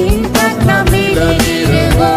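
A Hindi Christian devotional song: a voice singing a held, gliding melody over instrumental backing with a steady beat.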